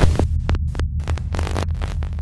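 Glitch-style intro sound design: a deep, throbbing bass hum broken up by sharp static clicks and brief stuttering cut-outs.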